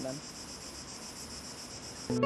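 A steady, high-pitched chorus of insects chirping in a fine, even pulse.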